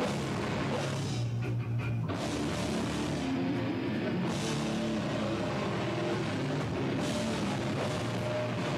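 Rock band playing live through a PA: loud electric guitar and drum kit in a heavy, driving part. The drums' high end drops out twice, for about a second each time, once about a second in and once around the middle.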